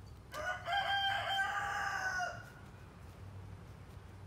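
A rooster crowing once, a single call of about two seconds that opens with a few short notes and then holds a long note that dips slightly as it ends.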